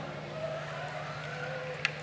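Low steady hum from a stage sound system between songs, with faint distant voices and one sharp click near the end.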